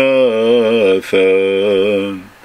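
A man chanting a Syriac liturgical hymn (an onitha) solo, holding long melismatic notes with a wavering pitch. There is a short break about halfway through, and the phrase trails off at the end.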